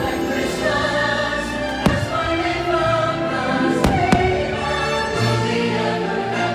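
Choral music with a sung melody plays throughout as a fireworks show soundtrack. Aerial firework shells burst with sharp booms over it: one about two seconds in and two in quick succession around four seconds in.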